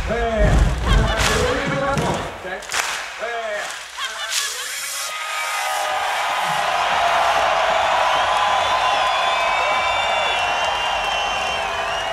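An electronic beat with heavy bass and bending, voice-like pitched sounds drops out about two seconds in. From about six seconds a live crowd's steady noise builds, with a few high whistles near the end.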